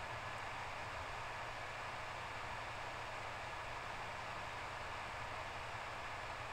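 Steady faint hiss with a low hum underneath: background room noise picked up by a microphone, unchanging throughout.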